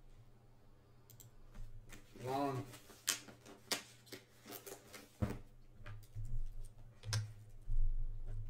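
Sparse, irregular sharp clicks and taps, about eight over the stretch, with a brief hummed voice sound about two seconds in.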